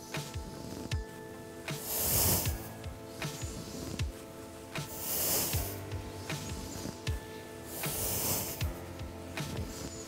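Soft background music of sustained chords over a low, soft beat, with a person's breathing as three long breaths about three seconds apart, in time with flowing cat-cow movements.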